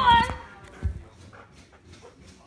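A dog's high, gliding whine that trails off in the first moment, followed by quieter shuffling and a soft thump just under a second in.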